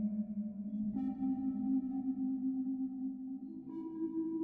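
Generative modular-synthesizer patch: sustained, bell-like resonant tones from sine oscillators and Plaits voices run through a Mutable Instruments Rings resonator and Beads granular processor. A low tone fades as a new, higher tone with overtones comes in about a second in, and another higher tone enters near the end.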